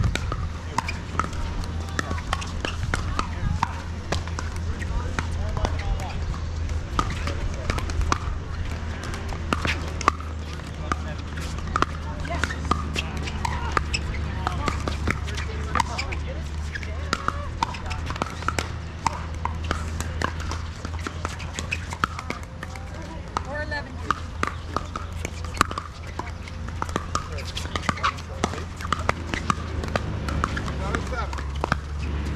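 Pickleball paddles striking plastic balls: scattered sharp pops from several courts at once, over a steady low hum.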